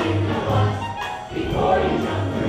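A stage musical's ensemble singing together over an orchestral accompaniment, with a bass line pulsing underneath.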